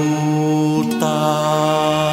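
A male voice holds a long final note of a slow ballad over sustained accompaniment. There is a small change in the backing about a second in.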